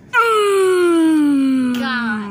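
A person's long, drawn-out wordless wail, one loud note that slides steadily down in pitch, close to the microphone.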